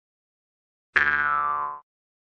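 A short synthetic note used as a transition sound effect: one pitched tone that starts sharply about a second in and fades out within a second, marking the change to the next listening round.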